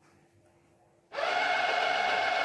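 Stainless-steel automatic soap dispenser's pump motor starting about a second in and running steadily for about a second and a half as it dispenses a dose of liquid soap onto a hand held under its sensor. This is the largest dose, set to the highest of its five volume settings.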